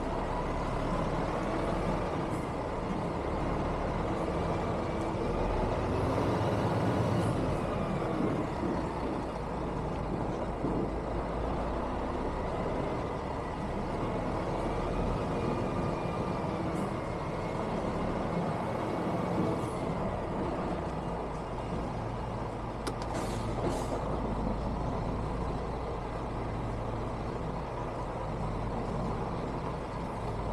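Heavy lorry's diesel engine running at low revs while manoeuvring slowly, heard from inside the cab, with a faint whine that rises and falls. A few brief hisses and sharp clicks come through, a cluster of them about three-quarters of the way in.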